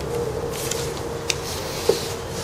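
A low steady hum under quiet background noise, with one light click a little over a second in as the gas blowback airsoft rifle is handled.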